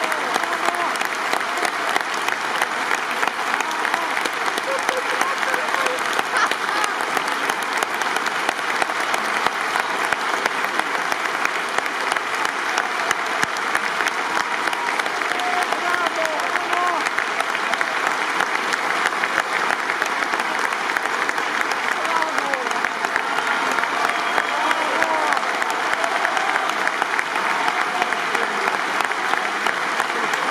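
Opera house audience applauding steadily, a dense, unbroken clapping, with a few voices calling out over it now and then.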